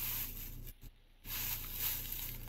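Thin plastic shopping bag rustling and crinkling as a boxed item is handled and pulled out of it, with a short silent break near the middle.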